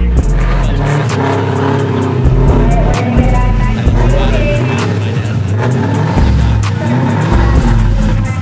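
Music with a heavy bass beat, over the engine of a Ford Mustang drag car running at the line.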